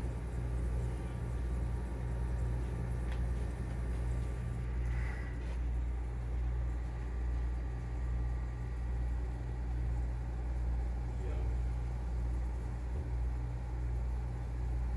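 Steady low hum of a 1980s central air conditioner running on R-22, heard at its supply vent: the compressor hum and air through the register, with faint steady higher tones above it.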